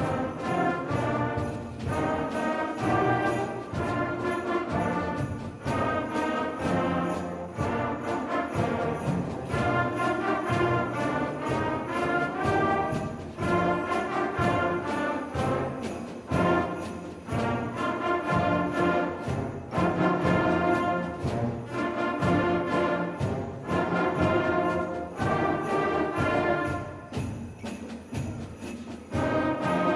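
Middle school concert band playing a Christmas rumba: brass and woodwinds over percussion, with a steady beat.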